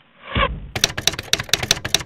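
Typewriter sound effect: rapid key strikes, about six a second, accompanying text being typed out on screen. It follows a short low hit with a brief pitched ring.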